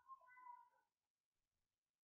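Near silence: room tone with a faint, short pitched call lasting under a second near the start, of the kind an animal such as a cat makes.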